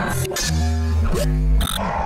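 Short music sting for an animated production-company logo: deep bass notes and sweeping pitched tones, with a bright high chime near the end.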